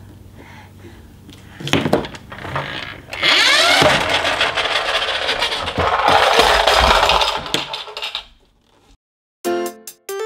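Wooden stacking-toy rings knocking and clattering on a tabletop and the stacker's wooden post: a sharp knock about two seconds in, then several seconds of continuous rattling that stops short. A bright children's music jingle starts near the end.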